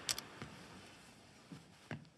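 A few faint, irregular footsteps on a hard floor, each a short sharp tap.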